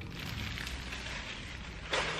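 Clear plastic packaging around a pack of silicone mats crinkling steadily as it is handled.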